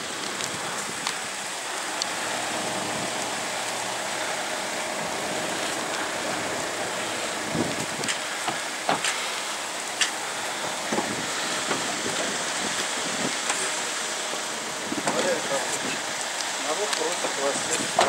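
Steady outdoor hiss with scattered sharp clicks. People start talking close by about three seconds before the end.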